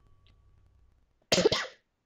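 A woman coughs once, briefly, about a second and a half in, in two quick bursts close together.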